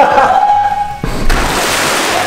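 CO2 fire extinguisher discharging into pool water: a loud, dense hiss of gas bubbling and churning the water, breaking off briefly about a second in. Background music plays over it.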